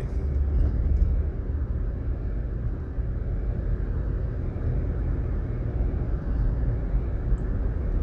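Steady low rumble of road and engine noise inside a moving car's cabin, with no sudden events.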